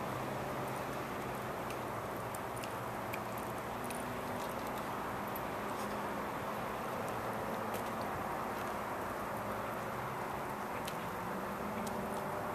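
Steady outdoor background noise of road traffic, an even hum with no distinct passing vehicle, with a few faint ticks scattered through it.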